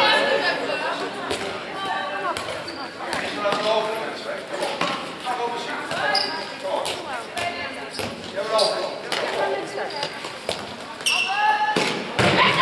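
Voices calling out across a sports hall during handball play, with the short thuds of the handball bouncing on the hall floor, all echoing in the large room.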